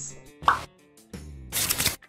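Short edited transition sound effects between news items: a pop about half a second in, a few brief musical tones, then a loud swoosh near the end.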